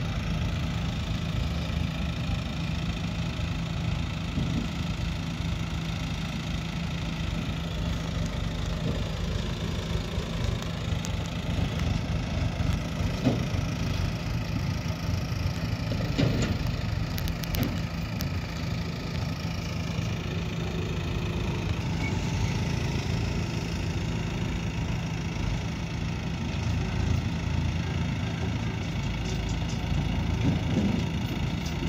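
Diesel engine of a JCB backhoe loader running steadily at an even pitch, with a couple of brief knocks about midway.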